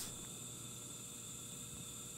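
Faint steady hiss with a low hum: an A3 International B8 glass-working torch burning cassette gas, fed air by an electric diaphragm air pump, running steadily just after being lit.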